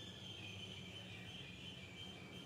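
A thin, high-pitched chirping trill from a small animal, starting and stopping with slight drops in pitch, over a steady low hum.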